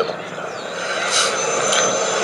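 Boeing Stearman biplane's nine-cylinder Pratt & Whitney R-985 radial engine and propeller running in flight, a steady noise growing louder as the plane comes closer.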